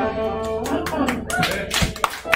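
The last chord of a live rock band rings out and fades, and a small audience starts clapping about half a second in, with a few voices among the claps.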